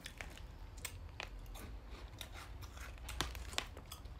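Close-up chewing of crunchy mini puffed rice cake bites: a low, scattered run of small crisp crunches.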